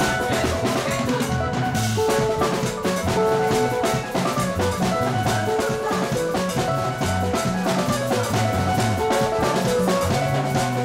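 Live band playing a steady dance beat on drum kit, with a repeating bass line, keyboard and electric guitar.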